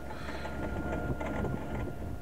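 Kubota B2320 compact tractor's three-cylinder diesel engine running steadily under load while pulling a grading scraper, with a faint steady whine above the engine drone.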